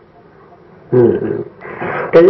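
A man's voice in a Khmer Buddhist sermon: a pause of about a second, then one drawn-out syllable that falls in pitch, followed by softer speech near the end.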